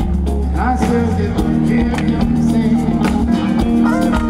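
Live soul band playing, with keyboards, bass and drums under a male lead vocal.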